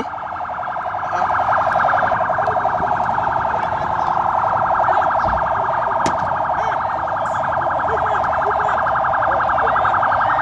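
An electronic alarm sounding continuously: one fairly loud, steady-pitched tone that pulses rapidly and evenly.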